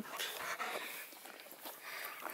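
Weimaraner dogs panting softly after running.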